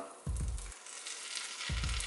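Pancake batter sizzling steadily in a hot frying pan as it is poured in, under background music with a deep bass thump about every second and a half.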